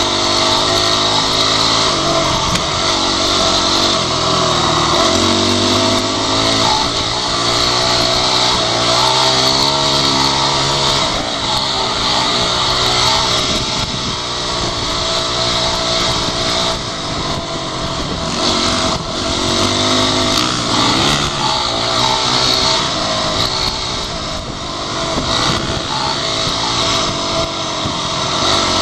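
Dirt bike engine running under way on a dirt trail, its revs rising and falling again and again with throttle and gear changes.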